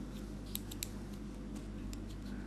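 Metal knitting needles clicking lightly against each other as stitches are cast on: a few quick clicks in the first half and one more near the end, over a steady low hum.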